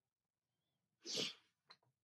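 A short, breathy sound from a person about a second in, followed by a couple of faint clicks; otherwise near silence.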